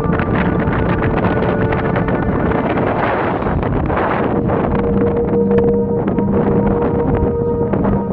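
Wind buffeting the microphone, with a dense, fluttering rush. A steady held music drone plays underneath.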